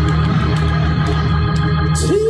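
Gospel organ accompaniment: sustained chords held steady over a low bass.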